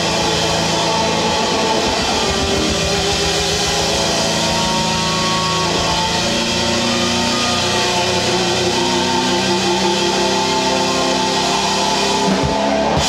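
Live indie rock band playing a song, with electric guitar and keyboards in a steady, full mix.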